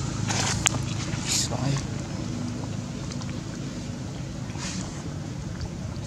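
Indistinct voices over a steady low hum, with a few brief hissing noises.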